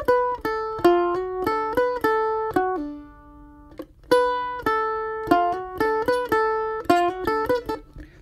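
Johansson F-style mandolin picking a short single-note bluegrass-style lick: a hammer-on from F to F sharp, then on to A, B and back to A. It is played twice, and the last note of the first pass rings out and fades about three seconds in before the second pass starts.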